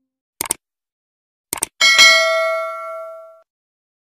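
Sound effects for a subscribe-button animation: two quick double mouse clicks, then a bell ding that rings on and fades out over about a second and a half.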